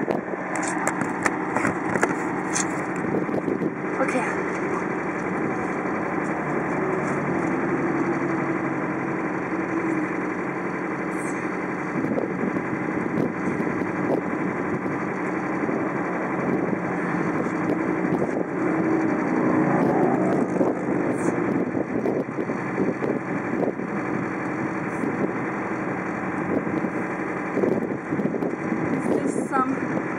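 Steady wind blowing across the microphone, with a vehicle engine running underneath.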